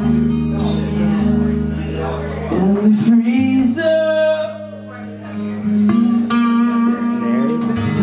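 Acoustic guitar strummed in held chords, changing about three seconds in, with a man singing over it through a live PA.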